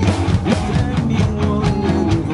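Acoustic drum kit played live along to a recorded pop-rock song, the drums giving a steady beat of hits over the song's sustained chords.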